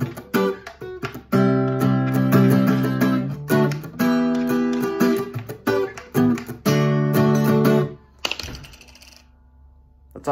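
Acoustic guitar strummed in chords, a song's closing chorus pattern. The strumming stops about eight seconds in and the last chord dies away.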